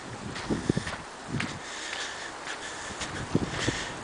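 Steady outdoor hiss with a few soft low thumps, typical of footsteps and camera handling while walking on a sandy track.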